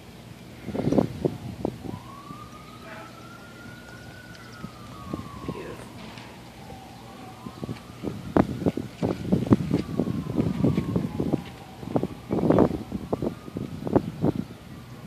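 A siren in a slow wail, its pitch rising and falling in long cycles of about five seconds, starting about a second and a half in. Irregular bursts of noise come and go, strongest near the start and in the second half.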